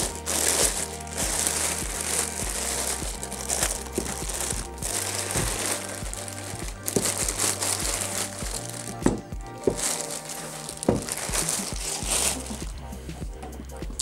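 Clear plastic bag crinkling and rustling in irregular bursts as it is worked off a machine by hand. Background music with a low bass line plays underneath.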